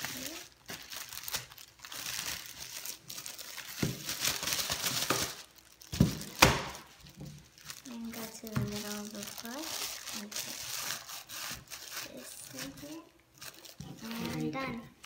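Thin clear plastic bag crinkling as a magazine-sized brochure is slid into it and the bag is pulled and smoothed around it. Two sharp knocks about six seconds in are the loudest sounds.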